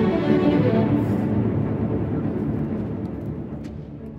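Symphony orchestra playing, bowed strings to the fore, the music fading gradually away.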